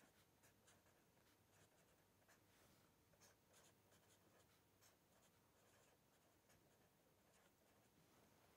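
Very faint scratching of a marker pen writing on paper, in many short, irregular strokes.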